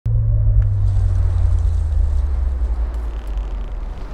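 A loud, deep rumble that starts suddenly and slowly fades, with a faint hiss above it.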